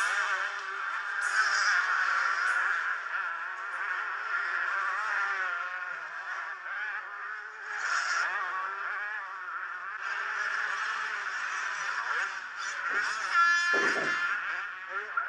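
Several two-stroke motocross bike engines racing, buzzing and revving with a constantly wavering pitch. One engine note drops sharply in pitch near the end.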